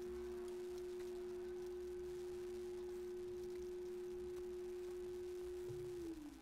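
A quiet, steady pure tone, like a held electronic note, with a fainter lower tone beneath it, holding one pitch without wavering and starting to slide downward right at the end.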